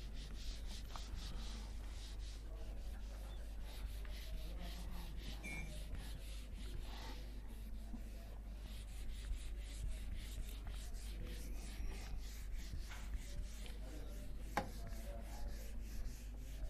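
Whiteboard eraser rubbing across a whiteboard in repeated quick back-and-forth strokes, two to three a second, with one sharp tap near the end.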